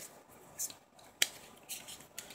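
Soft rustles of Pokémon trading cards being handled and laid out, with one sharp click a little over a second in.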